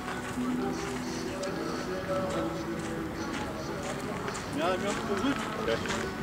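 Footsteps crunching on a gravel pitch as short irregular clicks, over background music with steady held notes.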